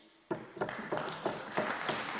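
Applause from members of a parliament, starting a moment in and building to steady clapping.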